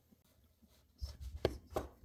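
Knife cutting firm green mango on a cutting board: about three quick crisp strokes in the second half.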